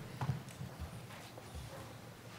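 Faint, irregular soft thumps and a few light clicks of footsteps and handling near the microphone during a speaker changeover.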